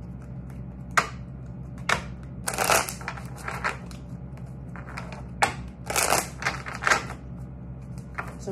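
A tarot deck being shuffled by hand, overhand: spells of quick card slaps and rustles with short pauses between them, over a low steady hum.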